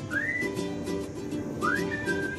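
Background music: a whistled melody that swoops up into two held notes, over a steady plucked-string accompaniment.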